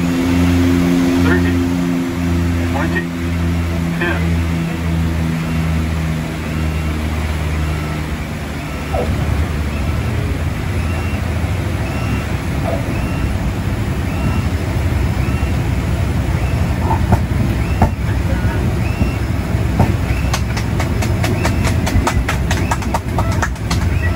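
The Twin Otter's twin Pratt & Whitney PT6A turboprop engines and propellers, heard from just behind the cockpit, droning with a pulsing beat on final approach. About eight seconds in the engine note drops away as power comes off for the landing, leaving the rumble of the wheels rolling along the runway, with rapid clicking near the end.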